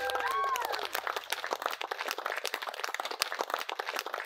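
Wedding guests clapping with a cheer or two at the start. The applause thins out and gets quieter.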